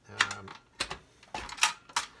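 Plastic ball tray of a pachinko machine being handled and slid off its mount, giving about six sharp, irregular clicks and knocks of plastic against metal.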